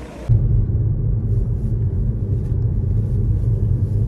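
Steady low rumble of a car driving, heard from inside the cabin. It starts abruptly a moment in.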